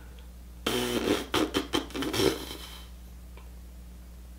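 A man breathing out heavily and making wordless thinking sounds under his breath while trying to remember something, with a few sharp mouth clicks. A steady low electrical hum runs underneath.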